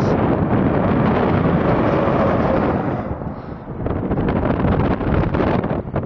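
Wind buffeting the microphone over the steady rumble of a vehicle moving along a highway, easing briefly a little past the middle.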